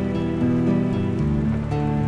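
Instrumental pirate-style music: sustained, pitched notes and chords that move every half second or so, with faint rain and sea ambience beneath.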